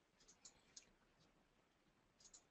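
Near silence with a few faint computer mouse clicks, the clearest two about half a second and three-quarters of a second in.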